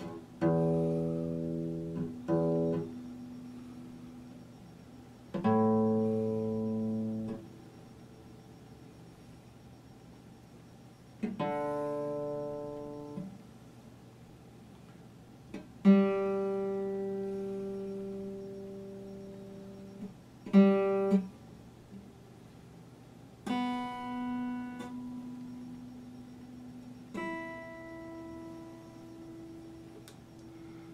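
Epiphone acoustic guitar, its strings plucked about eight times as single notes and chords with pauses between. Each is left to ring out and fade, as when checking whether the guitar is still in tune.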